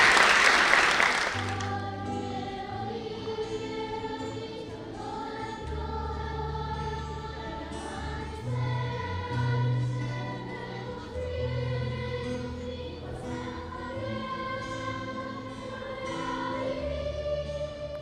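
Audience applause for the first second or so, then a children's choir singing long, held chords over low, sustained bass notes.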